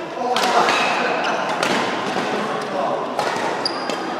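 Indoor badminton hall: voices in the background and a few sharp knocks, from shuttlecock hits or feet on the court, echoing in the large hall.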